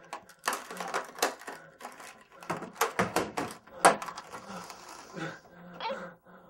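An irregular run of about ten sharp clicks and knocks over a few seconds.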